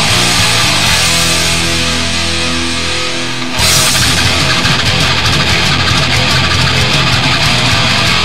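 Heavy metal/punk track with distorted electric guitar playing heavy chords. About three and a half seconds in the full band comes in louder, and the top end fills out.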